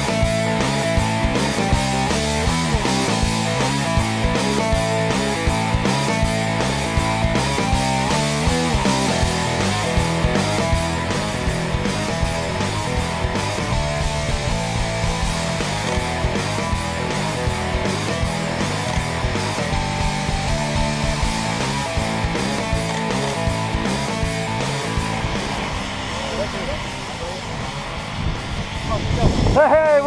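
Rock music backing track, playing steadily and then quieting over the last few seconds as a voice comes in.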